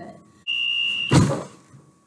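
A single steady high-pitched electronic beep lasting a little over half a second, cut off by a loud thump.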